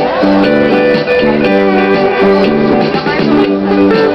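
Electric guitar played through an amplifier: a melody of held, singing notes that step from one pitch to the next every fraction of a second.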